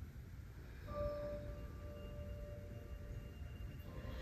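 A single bell-like chime struck about a second in, its clear metallic tone ringing on and slowly fading over the next few seconds.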